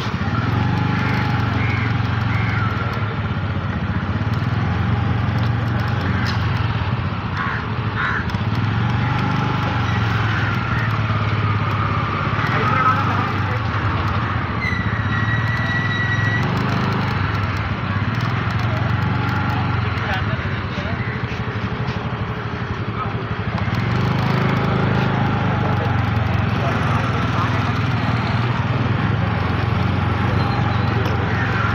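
Motor scooter engine running steadily at a low idle.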